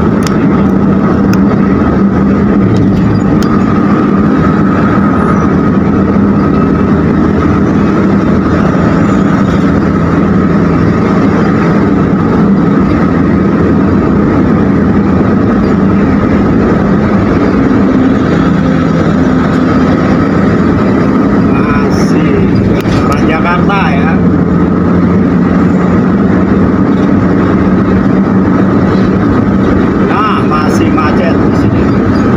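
Steady road and engine noise of a car travelling at highway speed, heard from inside the cabin, with a low drone that shifts slightly in pitch a little past the middle. A brief wavering, voice-like sound comes in about two-thirds of the way through.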